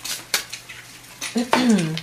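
Tarot cards being handled: a few sharp clicks and snaps as the deck is worked and a card drawn and laid down. Near the end, a short vocal hum that falls in pitch.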